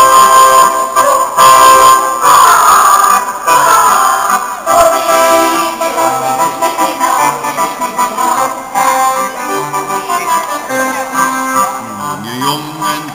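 Live folk music with accordion accompaniment, held notes played at a steady, loud level.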